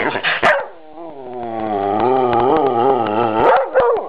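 A dog vocalizing: a short call at the start, then one long wavering call of about two and a half seconds whose pitch rises and falls, and a brief call near the end.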